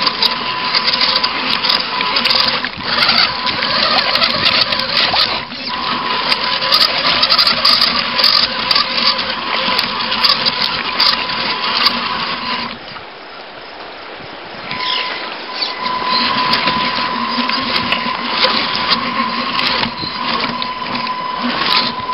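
RC rock crawler's electric drive motor and gears whining at a steady pitch, with dense clattering noise over it. About 13 seconds in the whine cuts out for about two seconds, then picks up again.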